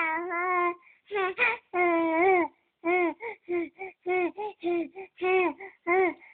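Young infant cooing and babbling on a steady pitch: a held note at the start, a few longer sounds, then from about halfway a string of short syllables at about three a second.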